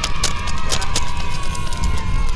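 Steady low rumble of a moving coach, with a long, slightly wavering held note over it and scattered clicks.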